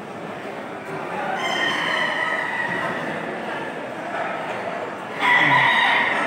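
Roosters crowing over a steady crowd murmur: one drawn-out crow about a second and a half in, and a louder crow starting suddenly near the end.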